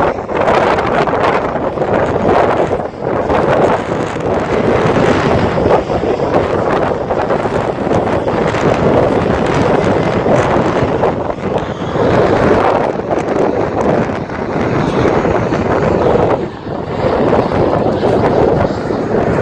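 Wind buffeting the microphone over the steady noise of city traffic, rising and falling in gusts.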